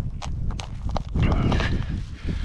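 A climber's hands and shoes scraping and knocking on brittle rock, with a few sharp clicks in the first second, over a steady low rumble.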